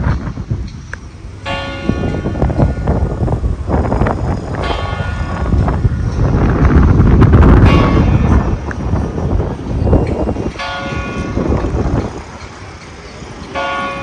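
Church bell in the Mosta Rotunda's bell tower tolling slowly: five strokes about three seconds apart, each ringing out and fading. A loud low rumble runs underneath.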